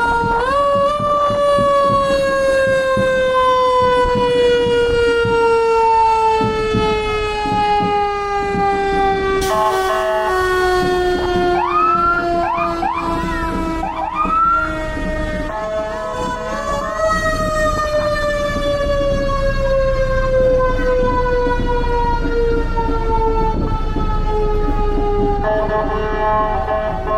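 Passing fire trucks' siren wailing: it winds up, then slowly falls in pitch for about fifteen seconds, winds up again about sixteen seconds in and slowly falls once more. A few short rising whoops from another siren come around twelve to fifteen seconds in, over the low running of the trucks' engines, with a brief hiss about ten seconds in.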